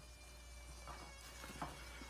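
Dremel Stylo+ rotary tool with a spherical carbide burr running at high speed, a faint steady high-pitched whine that wavers slightly as the burr grinds into the wood.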